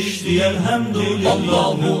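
Men singing an Islamic devotional song in a chanted style, with held and bending notes over a musical backing.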